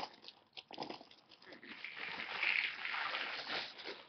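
Rustling and light knocks of hand handling: a plastic clog is moved about and set down on a wooden floor.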